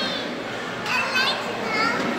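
High-pitched children's voices calling out in an indoor ice rink, once about a second in and again near the end, over steady background noise with a faint low hum.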